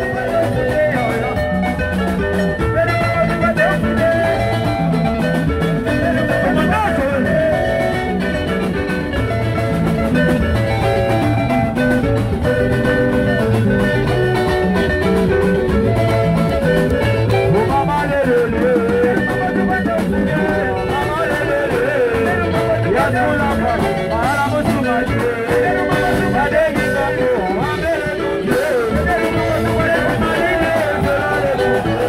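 Live band playing loud, steady dance music over the sound system, with a drum kit, congas, guitar and a singer's voice.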